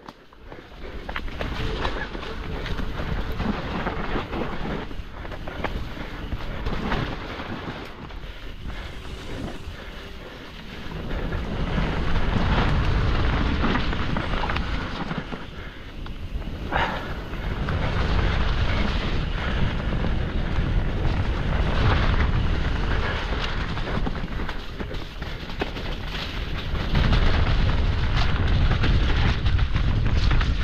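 Wind buffeting the microphone of a camera on a downhill mountain bike running fast down a dirt trail. Tyres run over the ground and the bike rattles and knocks over bumps. The rumble grows heavier about a third of the way in and again near the end.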